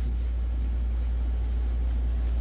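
A steady low hum with no distinct clicks or knocks.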